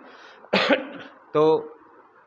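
A man clears his throat with one short, rough cough about half a second in, then says a single short word.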